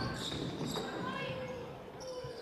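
Court sounds of a basketball game: the ball and players' shoes on a hardwood floor, with steady background hall noise.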